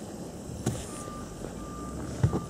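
Repeated electronic beeps at one steady pitch, starting about a second in, with a short click just before them.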